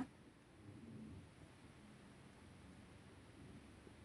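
Near silence: faint room tone, with a slight brief rise about a second in.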